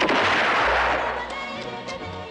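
A single loud gunshot sound effect that starts suddenly and dies away over about a second in a long echoing tail, over music.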